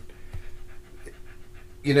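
A beagle panting softly, a quick even run of short breaths.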